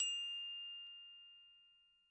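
A bright chime struck once, ringing with a clear high tone and dying away over about two seconds: the last note of a short rising chime jingle that accompanies an animated logo.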